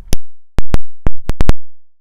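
About seven very loud, sharp digital clicks at irregular spacing, with dead silence between them: an audio glitch or dropout rather than a sound in the room.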